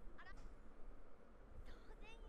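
Faint dubbed-anime dialogue: a young woman's high voice speaking Japanese, a short phrase just after the start and another line beginning near the end.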